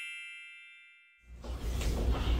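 A bright, bell-like chime sound effect rings and fades away over the first second. After a moment of silence, a low steady hum of room noise comes in.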